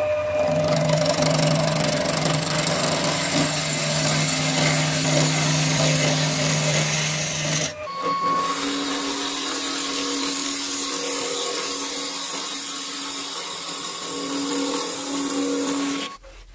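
Wood lathe running while a gouge cuts the spinning wood blank: a steady hiss of the cut over the machine's even hum. It breaks off briefly about eight seconds in and resumes with a slightly different hum.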